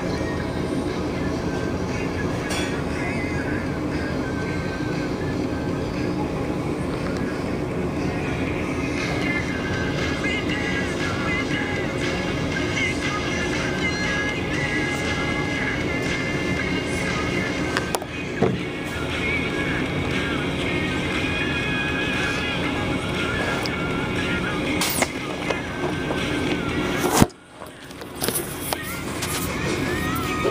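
Steady machine hum with music playing faintly in the background. Near the end there is a knock, the sound cuts out for a moment, then returns.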